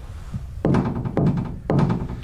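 Three knocks on a restroom stall door, about half a second apart, each one ringing briefly: the three knocks of the Hanako-san summoning ritual.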